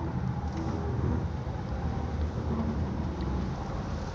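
Steady low background rumble with a faint even hiss above it.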